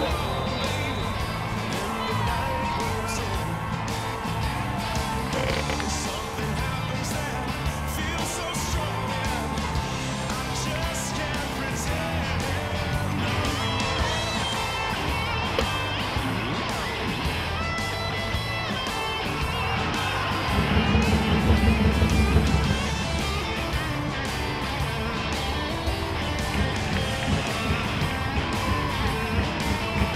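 Background music with a steady, stepping bass line, swelling louder in the low end for a couple of seconds about three-quarters of the way through.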